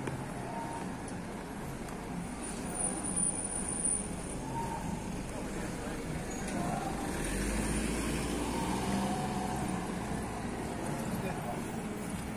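Street background of traffic and faint voices of passers-by, with a low vehicle rumble swelling from about seven seconds in.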